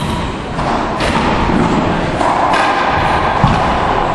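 Racquetball being struck and bouncing off the hardwood floor and walls of a racquetball court: several sharp thuds about a second apart, each ringing on in the court's echo.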